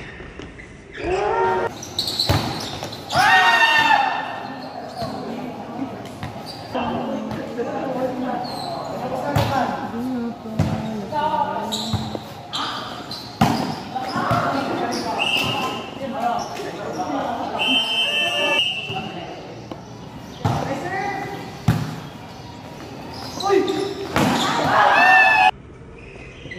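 A volleyball being struck again and again in play: sharp slaps of hands on the ball as it is served, set and spiked, and thuds on the court floor. Players and spectators shout throughout, loudest a few seconds in and near the end.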